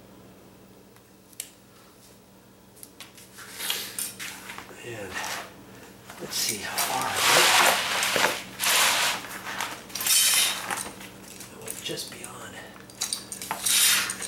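Quiet for the first few seconds, then a run of clattering and scraping handling noises, loudest past the middle and again near the end: a steel straightedge and a vinyl linoleum sheet being moved and set down on a concrete floor.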